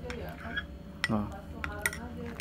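Metal spoon clinking lightly against a coffee-filled glass mug: a sharp chink about a second in and two quicker ones near the end.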